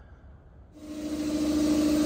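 Low room sound, then a machine's steady hum with a hiss that starts suddenly about three quarters of a second in.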